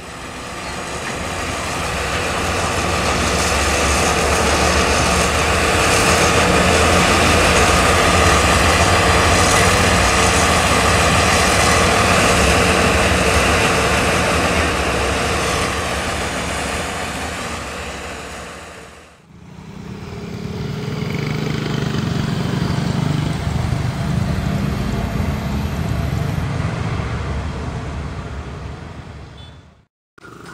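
A rail work train of flatcars carrying a track-laying crane car rolling past, its engine and wheels on the rail swelling over several seconds, holding steady, then fading. After a cut about two-thirds of the way in, a lower engine rumble follows.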